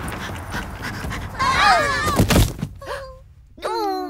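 Cartoon sound effects for a dog charging in: a rushing whoosh, then gliding cries about a second and a half in, then a heavy thud as the characters are knocked over. A voice follows near the end.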